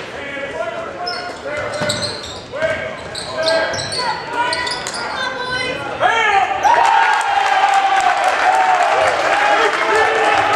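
The sound of a basketball game in a gymnasium: shouting voices, the ball bouncing on the hardwood and sneakers squeaking. About six seconds in, the voices rise into a louder, sustained yell from the crowd and players.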